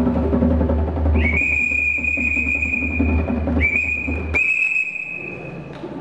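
A whistle blown in three steady, high blasts: a long one of over two seconds, a short one, then another long one. Under it is a low drum rumble that fades out before the last blast.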